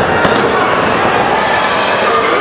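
Wrestling crowd shouting and clapping in an indoor hall, with two sharp slaps on the ring canvas just after the start during a pin attempt.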